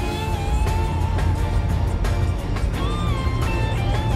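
Background music with a steady beat and a wavering lead melody.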